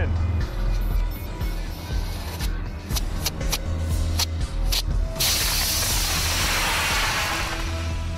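Over background music, an aluminium-fuelled solid rocket motor launching, heard as a loud rushing hiss about five seconds in. The hiss dulls and fades over about two and a half seconds.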